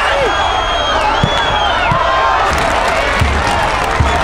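Football crowd chanting and cheering in the stands, a loud steady din with a high drawn-out whistle-like note over it.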